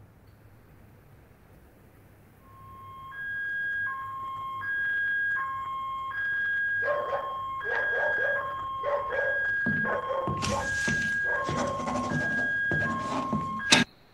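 Recorded two-tone electronic alarm alternating between a lower and a higher steady beep, each about three-quarters of a second long, starting about two and a half seconds in. From about seven seconds in, short knocks join it, and from about ten seconds in a loud noisy rush; the playback cuts off with a click just before the end.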